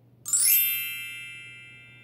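A bright chime sound effect: a single struck ring of many high, bell-like tones that starts a quarter second in and fades away over the next second and a half, marking the change to the next picture.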